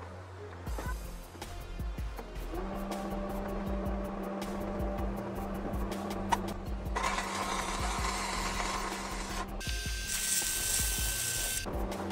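Stick-welding arc from a 6011 electrode crackling in two runs, the first starting about seven seconds in and the second about ten seconds in, over a steady background tone that sounds like music.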